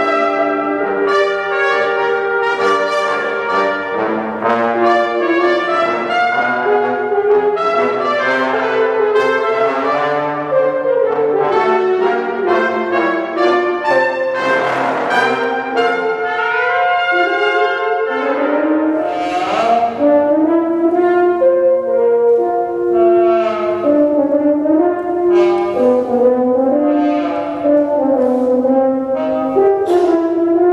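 Brass quintet of two trumpets, French horn, tenor trombone and bass trombone playing a piece together: sustained chords and moving lines without a break, swelling to a fuller, louder passage about halfway through.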